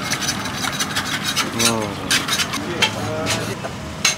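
Metal ladle clinking and scraping in a stainless-steel pot of stewed-meat broth as it is spooned into a plastic cup, a run of sharp clicks throughout. Brief voices in the background.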